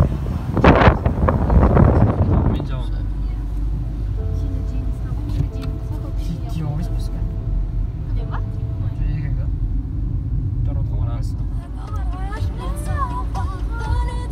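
Car cabin noise from driving on a rough, patched country road: a steady low rumble of tyres and engine, with a louder rushing noise in the first couple of seconds. Near the end a voice with gliding pitch comes in over the rumble.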